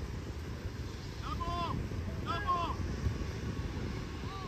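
Wind rumbling on the microphone, with two short distant shouts from across the field about a second and two seconds in.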